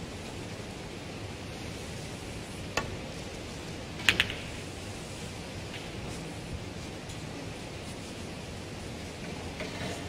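Snooker shot: the cue tip strikes the cue ball with a light click, and about a second and a half later a louder double click as the cue ball hits the yellow, over the steady hiss of the hall.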